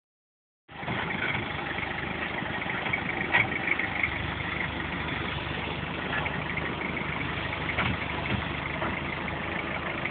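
Toyota Hilux engine running steadily while the 4WD crawls over rock ledges, with a few brief knocks along the way.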